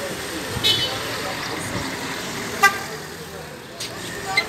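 Street traffic with voices in the background, a brief high chirp under a second in, and a single short, sharp toot of a vehicle horn about two-thirds of the way through.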